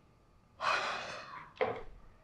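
A woman's sharp, long in-breath as she starts to cry, followed by a second, shorter breath.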